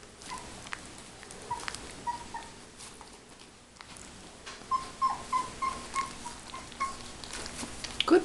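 Stabyhoun puppy whimpering in short, high squeaks: a few scattered ones at first, then a quick run of about eight, three or so a second, starting about five seconds in. Faint light clicks and scratches in between.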